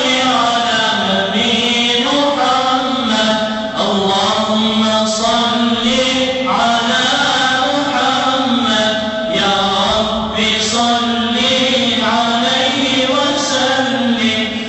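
A man's voice chanting a mevlud, a devotional poem in honour of the Prophet's birth, in long held, ornamented melodic phrases with short breaths between them.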